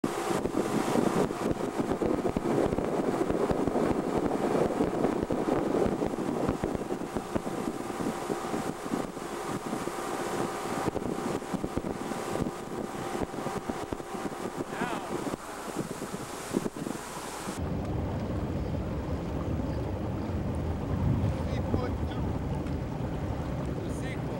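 Tow boat's motor running at speed, with wind buffeting the microphone and the hiss of water and spray over a few steady engine tones. About two-thirds through, the wind and hiss cut off suddenly, leaving a lower, steady engine rumble.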